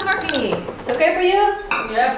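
Glassware and crockery clinking, with a voice in the middle of the clinks.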